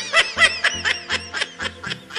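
Rapid high-pitched snickering laughter, a quick string of short 'hee' sounds about five a second, over background music with a steady low beat.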